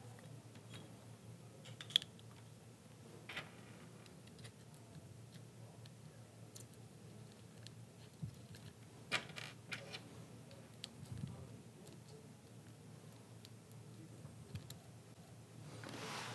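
Faint clicks and taps of a small plastic helmet-headset clamp mount being handled while a rubber spacer pad is pressed onto it, over a low room hum. The sharpest click comes about two seconds in, with a few more around nine to ten seconds in.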